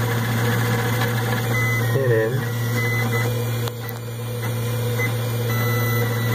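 3D-printed bevel-gear gearbox on a 3D printer running under its motor: a steady low hum with faint higher whines, dipping briefly in level about two-thirds of the way through. The gearbox's new 5 mm drive shaft is still breaking in.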